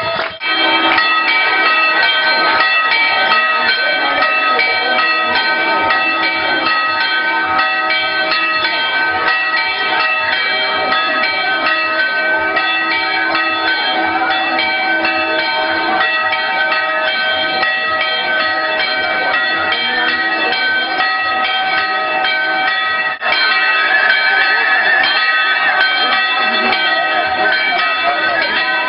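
Continuous music made of many sustained ringing tones held together, with a brief drop about 23 seconds in and a wavering higher line over it afterwards.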